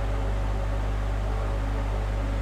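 A steady low hum: room tone.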